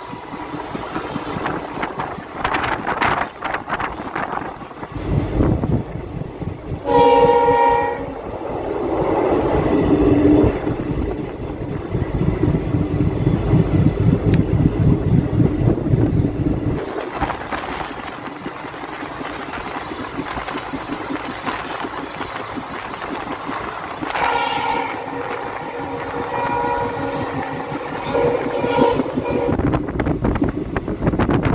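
Passenger train running over the rails with a steady rattle and rumble. Its horn sounds once, briefly, about seven seconds in, and again for several seconds near the end.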